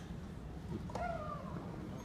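Tennis rally heard from high in the stands: sharp racket strikes on the ball about a second apart. About a second in, right after a strike, a player lets out a drawn-out cry that falls slightly in pitch.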